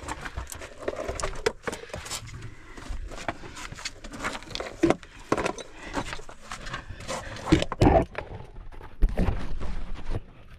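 A caver crawling over loose gravel and rubble in a low cave crawlway: irregular scraping and crunching of stones, with sharp knocks and clinks of gear, loudest near the end.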